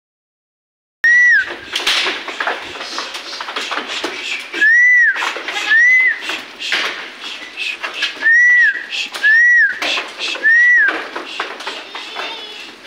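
A person whistling loudly in six short rising-and-falling whistles, starting about a second in, over the scuffing and clatter of a small herd of goats moving on stony ground.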